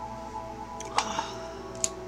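Soft instrumental background music with long held notes, under two sharp clicks, one about a second in and one near the end, from a tarot card being handled and laid down on the table.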